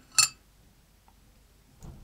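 A metal spoon clinks once against a drinking glass shortly after the start as it scoops tapioca pearls out of milk tea, with a fainter tap near the end.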